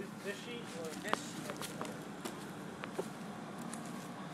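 Quiet outdoor ambience with a faint voice in the distance and a few soft clicks and taps.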